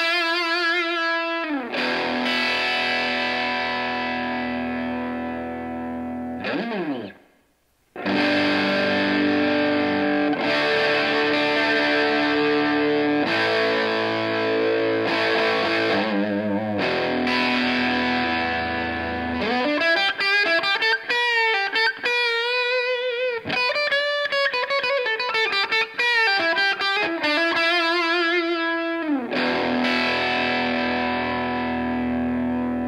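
Electric guitar played through a Xotic SL Drive overdrive pedal on two different DIP-switch settings: held, driven chords that slide down in pitch and stop briefly about seven seconds in, more ringing chords, then a single-note lead phrase with bends and vibrato in the last third.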